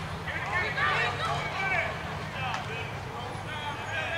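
Distant voices calling out and chattering around a youth baseball field, from players and spectators, over a low steady hum.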